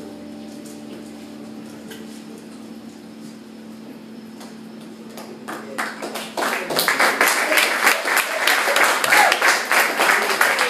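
The band's last held chord fades out, then a small audience breaks into applause just past halfway, scattered claps at first and quickly building to steady loud clapping.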